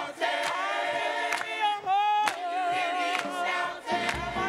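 Mixed choir singing a cappella, several voices holding wavering pitches with vibrato, with hand claps about once a second on the beat.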